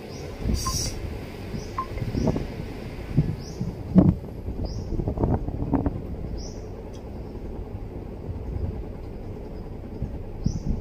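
Small rustles and knocks from cloth and thread being handled during hand-sewing of a trouser seam, over a steady low rumble. A short high chirp repeats about once a second.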